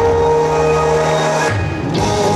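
A band playing the instrumental introduction of a pop song, with sustained chords that change about one and a half seconds in.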